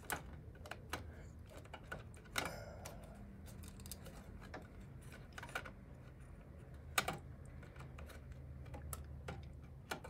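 Irregular small clicks and knocks of a drive and its cable being pushed and worked into the metal drive cage of a Power Mac G4 tower, the sharpest about seven seconds in, over a low steady hum.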